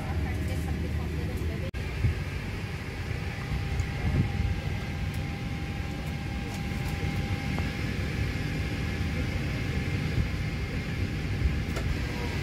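Steady low hum of a Boeing 777-300ER cabin parked at the gate, its air-conditioning ventilation running with a faint steady whine over it. The sound cuts out for an instant about two seconds in.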